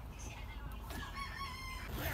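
A rooster crowing once, faintly: a single held call of about a second, starting about a second in.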